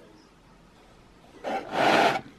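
Faint room tone, then near the end a short, loud scraping rub as the plastic parts of a Speedplay walkable cleat are handled.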